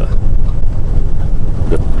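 Semi truck heard from inside its cab while driving: a steady, loud low rumble of engine and road noise.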